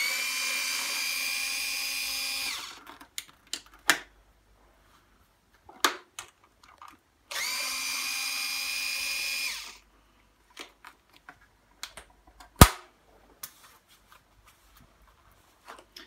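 Cordless electric screwdriver with a T20 Torx bit backing out two screws from a stroller's plastic handle mechanism. It runs twice for about two and a half seconds each, at the start and again about seven seconds in, its whine rising briefly as it spins up and then holding steady. Light clicks from handling fall between the runs, and a single sharp knock comes about twelve and a half seconds in.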